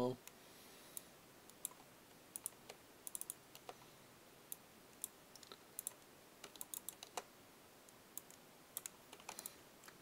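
Faint, irregular clicking of a computer keyboard and mouse, some clicks coming in quick runs of two or three.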